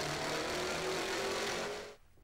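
Veritas RS III sports car driving, its engine holding a steady note, fading out near the end.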